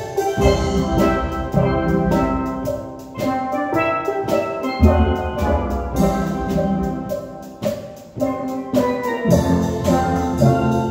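Steel pan ensemble playing a tune: quick mallet-struck notes ringing over low bass pans, easing off briefly twice between phrases.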